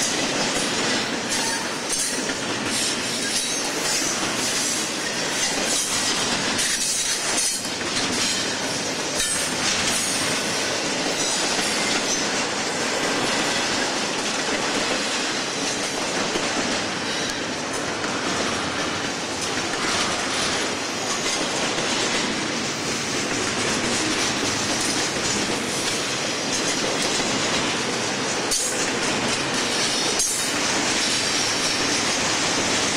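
Double-stack container train's well cars rolling past at close range: a steady, loud rumble of wheels on rail with repeated clicking over the rail joints.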